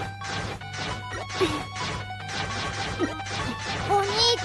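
Music with steady held tones, overlaid by a rapid series of crashing impact sound effects.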